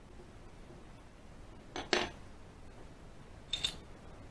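Metal clicks from a dimple-cylinder padlock being picked open. A sharp click with a brief metallic ring comes about two seconds in, the loudest sound, and two lighter clicks come close together near the end.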